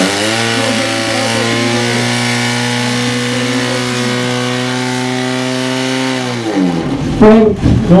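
Portable motor fire pump's engine running flat out at a steady high pitch while it drives water through the attack hoses, then its revs falling away about six and a half seconds in as it is throttled back.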